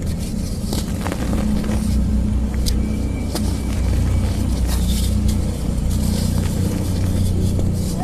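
A steady low engine-like hum with scattered light crackles and clicks.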